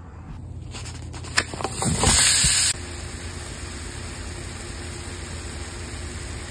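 Food sizzling in a hot pan: a loud burst of sizzle about two seconds in that cuts off abruptly, then a steadier, softer hiss. A few faint clicks come before it.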